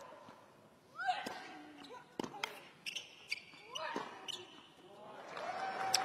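A tennis serve and short rally on a hard court: a handful of sharp racket-on-ball strikes and ball bounces over about two and a half seconds, starting about a second in, with short grunts of effort from a player on the shots.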